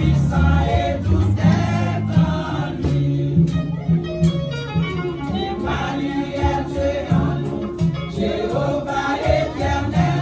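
Women's church choir singing a gospel hymn together.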